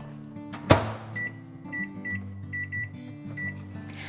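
Microwave oven door shut with one sharp clack, followed by a string of short, same-pitch keypad beeps as the cooking time is set, over background music.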